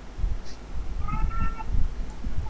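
A single short, high-pitched animal call, under a second long, about halfway through, over a steady low rumble.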